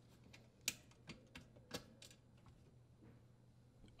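A handful of faint, sharp metallic clicks and ticks, the clearest a little under a second in, as a Phillips screwdriver backs out the grounding-wire screw on a dishwasher's electrical box and the freed wire is handled.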